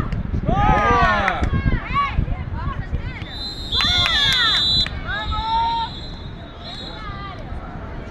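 High-pitched shouting and cheering from several voices at once, loudest in the first two seconds, then a referee's whistle blown as one long blast of over a second about three and a half seconds in, with a weaker tone lingering after it.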